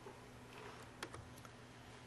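Quiet room tone with a few faint, sharp clicks about a second in: a computer key pressed to advance the lecture slides.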